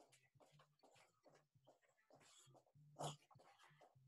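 Near silence, with faint irregular short sounds throughout and one brief, slightly louder sound about three seconds in.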